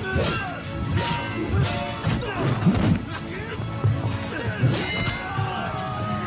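Film battle soundtrack: dramatic music under the shouting of fighters, with several sharp hits of a melee at uneven intervals.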